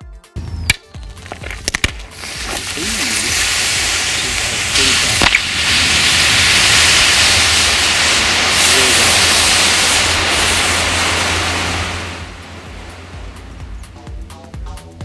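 Spiked 5S 5000 mAh lithium-polymer battery pack venting: a few sharp cracks, then a hiss that builds over a couple of seconds into a loud, steady rush of escaping gas and smoke, dying down near the end. A spike driven through all five fully charged cells has made a dead short, and the pack is reacting violently.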